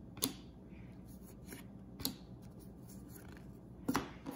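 Hockey trading cards flicked one by one off the top of a hand-held stack: three brief card slaps about two seconds apart.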